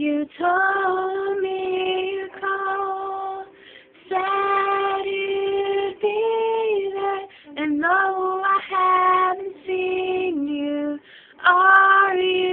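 A girl singing solo and unaccompanied, in long held notes with short pauses for breath between phrases.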